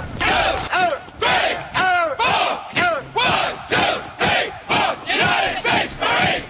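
A group of voices shouting short calls together in unison, drill-style, about two shouts a second in a steady rhythm.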